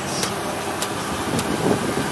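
2012 Chevy 2500HD pickup's engine running at idle, a steady noise, with a light tick repeating about every half second.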